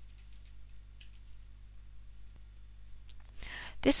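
A low, faint steady hum with a few faint, scattered clicks, then a person's intake of breath near the end, just before speech resumes.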